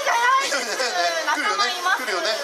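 Speech only: lively talk amplified through a stage microphone and loudspeakers.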